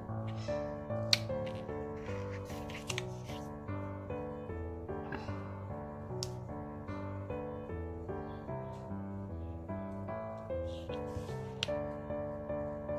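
Background music with a melody of evenly stepping notes. Under it, a few faint clicks and rustles of hands handling paper and washi tape, the sharpest about a second in.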